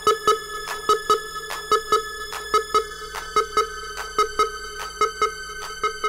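Electronic bounce dance music from a DJ mix: a quick, uneven pattern of sharp synth stabs and hits over sustained synth tones.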